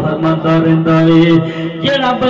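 A man singing a naat (Urdu devotional verse) holds one long, steady note for about a second and a half, then his voice moves on to shorter notes.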